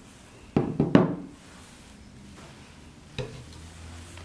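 A handheld water-quality probe being set down on a tabletop: two sharp knocks about half a second apart, then a lighter knock near the end.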